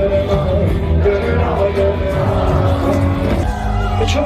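Live rock band playing loud through a concert PA: a male singer over electric guitar and drums, heard from within the audience.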